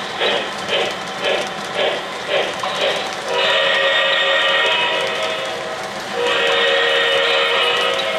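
An O-gauge model steam locomotive's electronic sound system chuffing steadily, about two puffs a second, then sounding two long steam-whistle blasts with several tones, the second starting just after the first ends.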